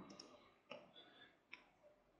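A few faint, short clicks of a computer mouse and keyboard over near silence, as a layer is renamed and another selected.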